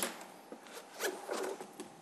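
Handling noise picked up by a microphone: a sharp click, then about a second in a brief rustle over a faint steady hum.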